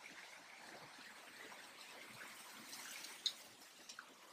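Faint trickling of a small waterfall and stream, with one brief high sound about three seconds in.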